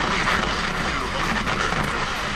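Steady driving noise inside a Ford Escort Mk7's cabin: engine and road roar while the car is under way.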